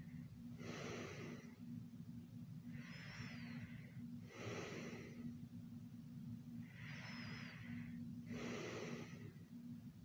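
Slow, heavy breathing of a sleeper, a rasping rush of air about every two seconds with a thin whistle at the start of some breaths. A steady low hum runs underneath.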